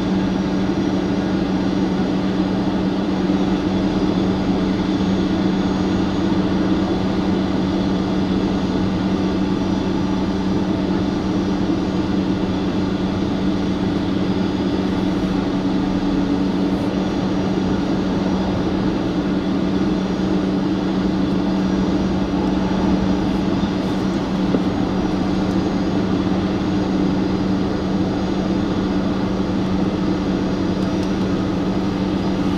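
Steady, unbroken drone of jet aircraft on an airport ramp heard from inside a vehicle cabin: a low hum with fainter whining tones above it, holding level throughout.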